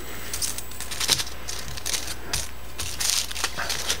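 Aluminium foil crinkling and crackling in irregular short ticks as fingers handle and fold it around a row of razor blades.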